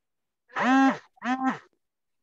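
A person's voice: two drawn-out vocal sounds, each about half a second long, held at a steady pitch and dropping at the end, with no clear words.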